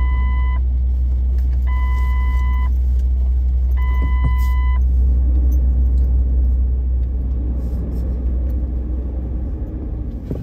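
Heavy city street traffic: a loud, deep, steady vehicle rumble. Three long, even electronic beeps come in the first five seconds, about two seconds apart.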